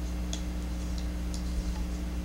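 A few faint, light clicks as a Boker Gamma folding pocket knife is closed by hand, its liner lock released and the ceramic blade folded into the Zytel handle, over a steady low electrical hum.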